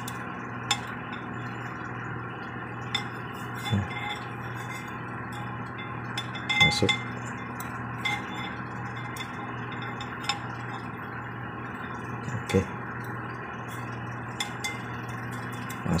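Light metallic clinks and scrapes of steel feeler-gauge blades against a steel cylinder liner as the ring gap is tried with the 80 blade, a handful of scattered clicks over a steady background hum.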